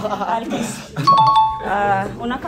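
A two-note chime sound effect about a second in: a higher note, then a lower one, like a doorbell ding-dong, over voices talking.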